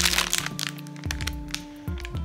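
A clear plastic bag of small packaged items crackling and crinkling as it is handled, with the sharpest crackles in the first half second. Background music with deep, sliding bass notes plays underneath.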